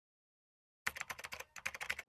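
A quick run of computer-keyboard typing clicks, many keystrokes a second, starting about a second in with a short pause midway.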